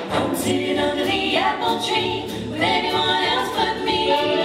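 A female vocal trio singing together in harmony with a big band behind them, the voices swooping up in pitch twice.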